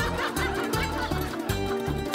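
Bird calls, repeated and wavering in pitch, over background music with a steady pulsing bass beat.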